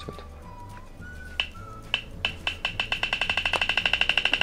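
Spin sound effect of an online roulette wheel from a laptop speaker: scattered clicks from about a second and a half in, turning into fast, even ticking at about eight ticks a second as the wheel spins.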